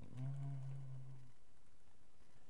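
A man's low, steady hum or drawn-out 'mmm', held at one pitch for just over a second, with faint keyboard clicks.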